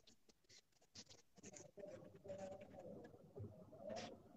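Faint scratching of charcoal on paper in short, irregular strokes.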